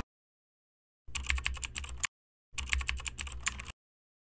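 Typing sound effect: two quick runs of rapid key clacks, each about a second long, with a short pause between them.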